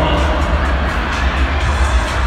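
Loud venue music over the PA with heavy bass, mixed with crowd noise from the audience, picked up by a phone among the audience.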